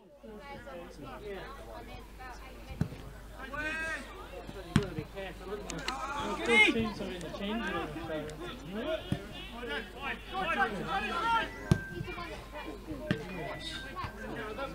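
Players and spectators shouting across a football pitch, with a few sharp thuds of the ball being kicked, the clearest about three, five and twelve seconds in.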